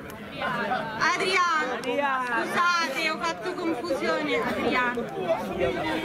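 Several people talking at once, overlapping chatter with no single clear voice.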